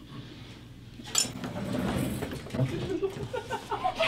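Forks clinking on plates while people eat, then laughter and giggling in the second half, after about a second of quiet room tone.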